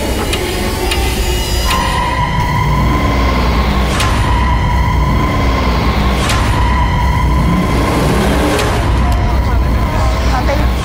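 Trailer sound design: a steady high ringing tone comes in a couple of seconds in and holds over a deep rumbling bed, with sharp hits about every two seconds.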